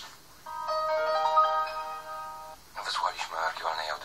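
A short electronic chime: several steady tones enter one after another and hold as a chord for about two seconds, then stop. A voice resumes near the end.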